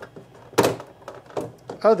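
Plastic back cover of a Dell Inspiron 3477 all-in-one being pried off: one sharp snap about half a second in as a retaining clip lets go, then a couple of lighter clicks, with a man's voice starting at the very end.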